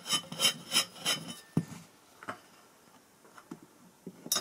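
Metal thread scraping as the cylinder of a vintage hand tyre pump is unscrewed from its base: about three gritty strokes a second for the first second or so, then a single sharp click and a few faint ticks as the parts come apart.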